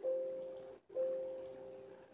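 Windows error alert chime, sounding twice about a second apart and fading after each, as the OSD config software reports 'Failed to talk to bootloader'. The error means the MinimOSD board could not be reached; the serial TX and RX wires are swapped.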